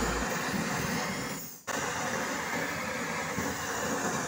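Jeweller's torch flame hissing steadily while heating a silver chain bracelet, briefly dropping out about one and a half seconds in.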